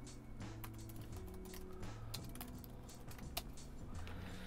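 Typing on a computer keyboard: quiet, irregular key clicks, with soft background music underneath.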